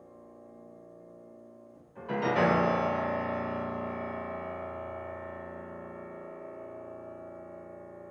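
Grand piano: a quiet held chord dies away, then about two seconds in a loud chord is struck and left ringing, fading slowly.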